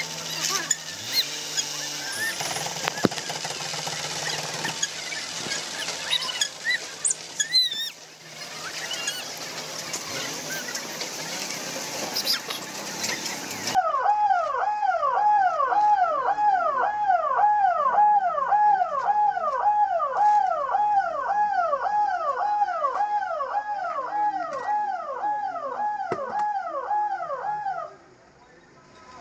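Outdoor noise of a crowd and engines. Then, about halfway through, an ambulance siren cuts in, wailing in quick repeated sweeps of about two a second, and stops just before the end.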